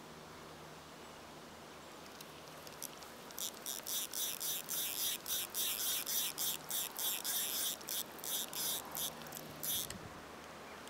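Spinning reel being cranked right beside the microphone: a rhythmic high-pitched whirring, about three pulses a second, starting about three seconds in and stopping just before the end.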